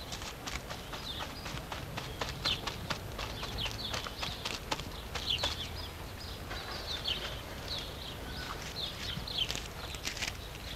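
Short chirping bird calls throughout, with a run of sharp, irregular clicks or knocks over roughly the first half.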